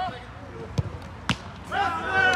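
Two sharp thuds of a football being kicked on artificial turf, about half a second apart, the second louder. A player's shout starts near the end.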